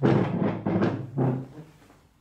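A chair dragged across a hard floor: about three loud, low, groaning scrapes in a row, fading out after a second and a half.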